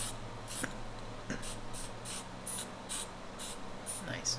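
Aerosol spray-paint can sprayed in short repeated bursts, about two a second, as colour is tinted onto the painting, over a steady low hum.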